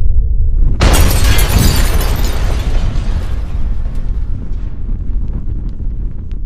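A low rumble, then a sudden loud explosion-like blast about a second in, its noise slowly fading over the following seconds.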